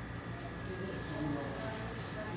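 Indistinct voices of people talking in the background, with a faint steady high tone underneath.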